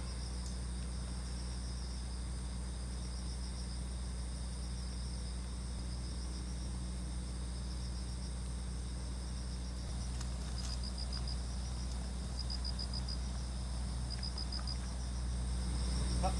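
Crickets chirping steadily, with three short trills of rapid pulses in the second half, over a steady low hum.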